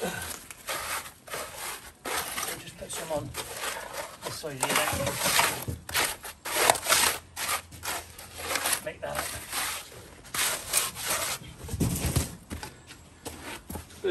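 Wooden hand float scraping and rubbing over wet concrete in a long series of uneven back-and-forth strokes, smoothing it level around a drainage chamber.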